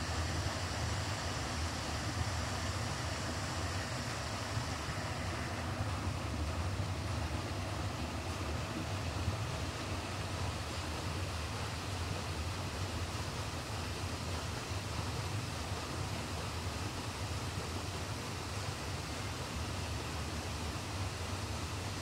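Steady machinery noise of a copper-concentrate filtration plant: an even rushing din over a low hum, without change.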